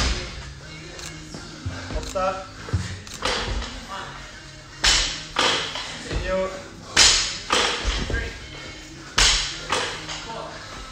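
Thuds of burpees over a barbell on rubber gym flooring: the body dropping to the floor and the feet landing after jumps over the bar, several irregular impacts over background music.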